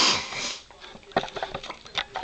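A sharp nasal sniff through a runny nose, then a few light clicks and taps of plastic toy figures being handled on a table.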